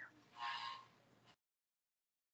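Near silence on a video call: one faint, brief sound about half a second in, then the audio drops out to dead silence.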